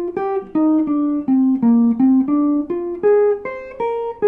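Archtop jazz guitar playing a single-note jazz line, one plucked note at a time at about three notes a second. The line steps down in pitch through the first half and climbs back up higher near the end.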